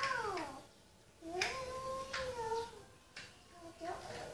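A toddler's high, drawn-out vocalizing: a short falling cry at the start, then one long held note, with a few light clicks like plastic toy blocks knocking together.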